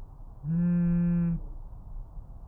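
A cell phone vibrating once: a steady low buzz lasting about a second, over a constant low hum.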